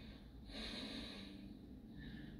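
A faint, long breath out, starting about half a second in and lasting about a second and a half.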